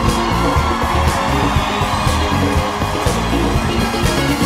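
Live rock-pop band playing an instrumental outro, with bass and a steady drum beat.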